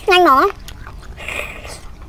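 A woman's loud closed-mouth 'mmm' of relish, dipping and rising again in pitch, over the first half second. About a second later comes a short, quieter wet sucking noise as she sucks spicy fried snail meat from its shell.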